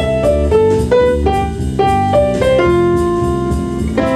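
Smooth jazz played on keyboards: a melody of held notes on an upper keyboard over piano chords.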